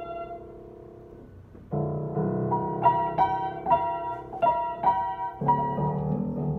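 Upright acoustic piano played by a young child picking out her own simple tune: a held chord fades away over the first second and a half, then a new chord comes in with a higher note struck again and again, about two a second, and the chord changes near the end.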